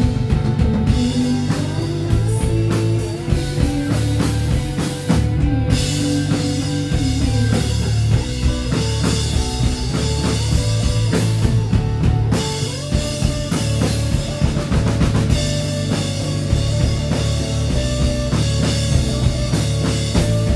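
Live rock band playing a full-band passage: electric guitars over a drum kit with frequent drum hits.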